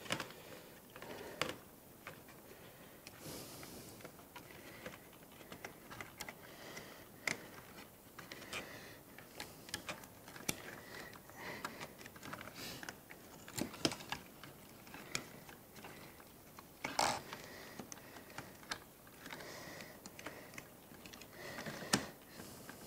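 Scattered small plastic clicks and taps as hands handle the gimbal assembly and wiring inside an opened FrSky Taranis X9D radio transmitter case, irregular and faint, with one sharper click near the end.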